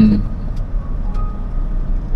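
A car moving at low speed, heard from inside the cabin: a steady low rumble of engine and road noise.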